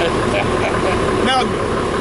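A man laughs briefly and says a word over a steady low background rumble.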